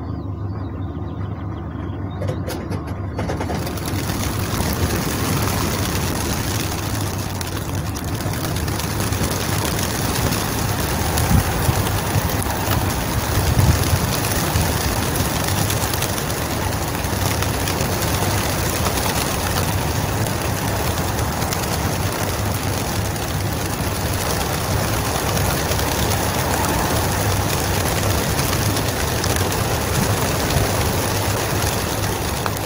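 A few clicks, then a mass release of racing pigeons from a transport truck's crates: a dense, steady rush of hundreds of wingbeats starts a few seconds in and carries on. Under it runs a low steady hum from the truck.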